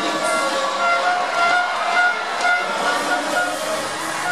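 Music over the stadium's public-address system, a melody of short held notes, over the hubbub of a large crowd.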